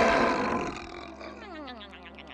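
A cartoon giant-squirrel snore from hibernating Sandy Cheeks: a loud, rough, roaring snore that dies away within the first second, followed by quieter sliding tones falling in pitch.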